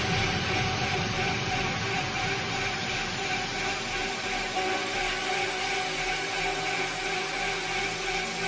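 A beatless breakdown in a jungle DJ mix: a steady, dense droning synth texture of held tones over a noisy wash, with no drums.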